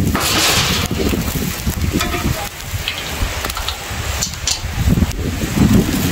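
Rain falling with a steady hiss, with wind and handling rumble on the microphone and a few small clicks and rustles.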